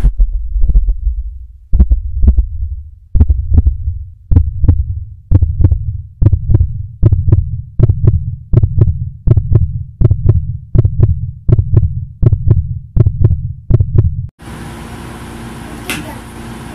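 Heartbeat sound effect: deep double thumps, slow at first and quickening to about two beats a second, stopping suddenly near the end.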